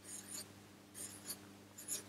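Black marker pen drawing on paper in a few short, faint strokes as small circles are sketched.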